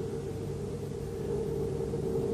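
Steady low hum and hiss with a faint constant tone, the background noise of an old soundtrack, with no distinct event.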